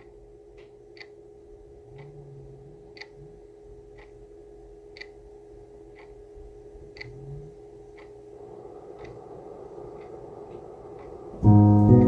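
A clock ticking about once a second over a faint steady drone. About half a second before the end, guitar and piano music comes in loudly.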